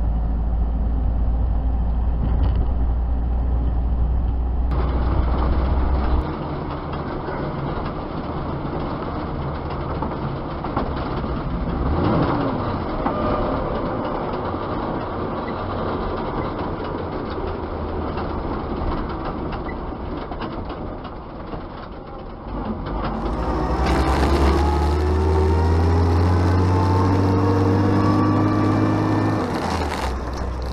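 Engine and road noise from a Dodge truck and a Jeep on the move, heard in turn through cameras on the following Jeep, inside the Dodge's cab and on the Dodge's bonnet. In the last part the Dodge's engine rises steadily in pitch as it accelerates.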